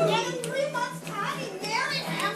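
A crowd of people talking and calling out over one another in a small room.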